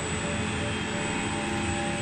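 Steady machine hum with several constant whining tones, high and low: the CNC milling machine's spindle running in at a fixed speed.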